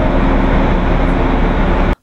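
Loud, steady machinery noise in an underground mine: a dense, even din with a low hum beneath, cut off abruptly near the end.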